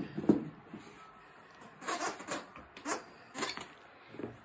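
A Staffie cross dog chewing and mouthing a plush fox toy. There is a few short, scratchy bursts, at about two, three and three and a half seconds in.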